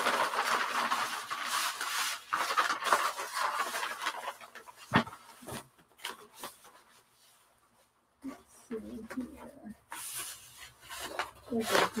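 Large sheets of brown shipping paper rustling and crinkling as rolled drawings are handled and unrolled, with a single knock about five seconds in.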